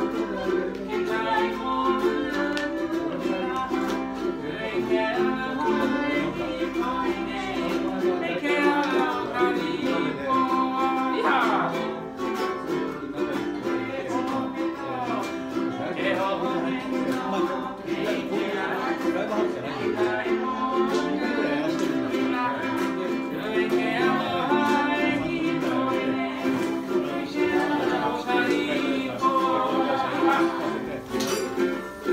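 Ukulele strummed steadily, accompanying a man singing a Hawaiian song for hula.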